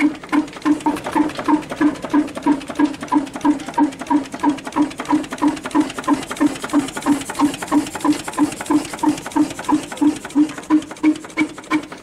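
A 1949 38 hp English stationary diesel engine running steadily, its exhaust beating out of a tall vertical stack at a slow, even pace of about three beats a second.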